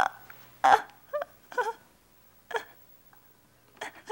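Grieving people sobbing: about six short, broken cries with breaks of quiet between them.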